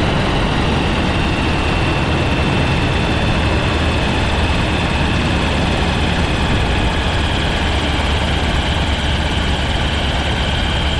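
Weight-shift ultralight trike's pusher engine and propeller running steadily, with wind rushing over the wing-mounted camera.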